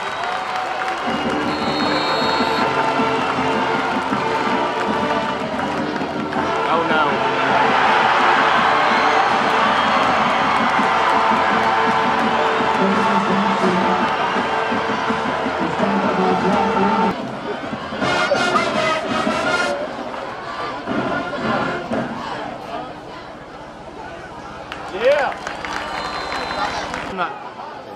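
Stadium crowd cheering with music playing over it, building to its loudest in the middle; the music stops about seventeen seconds in, leaving a quieter crowd and scattered voices, with a brief loud shout near the end.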